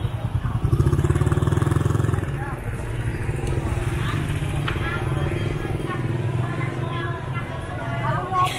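Motor scooter engine running close by, loudest from about one to two seconds in, then running on more quietly under the voices of people in the street.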